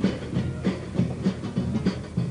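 Carnival band music with no singing: acoustic guitar strumming over a steady drum beat, about three strikes a second.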